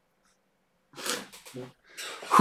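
A man's short, breathy burst of laughter about a second in, followed by a couple of smaller breaths of laughter.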